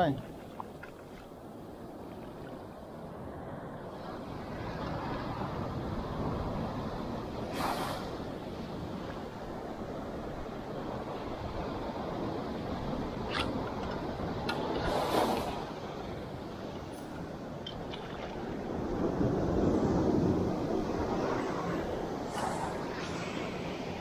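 Sea surf washing onto the shore, with wind on the microphone. The noise swells and fades with the waves and is loudest about three-quarters of the way through. A few brief clicks sound along the way.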